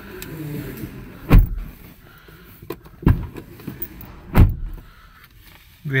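Three dull thumps, the first about a second in and the last past the middle, with a few lighter clicks between them.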